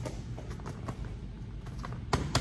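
Hands squeezing and turning a freshly inflated speed bag, pumped nice and firm: a few faint creaks and light taps over low room hum.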